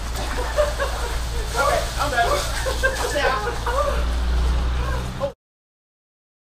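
A group of men laughing and exclaiming while sitting in cold water, over a steady low hum. All sound cuts off abruptly near the end.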